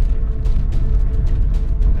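Car driving slowly over cracked, potholed pavement, heard from inside the cabin: a steady low road rumble with frequent small clicks and rattles. Background music plays underneath.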